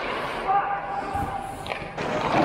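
Ice hockey play in a rink: skates and sticks scraping on the ice with distant players' voices, then a sharp stick-on-puck clack near the end as a shot is taken at the net.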